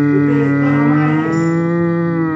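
Saint Bernard singing along to a song: one long, low, unbroken howl, its pitch rising slightly about halfway through.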